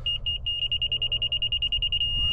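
Laser level receiver on a grade rod beeping with a high electronic tone: a few quick beeps, then a steady tone from about half a second in. The steady tone signals that the receiver sits level with the rotating laser's beam.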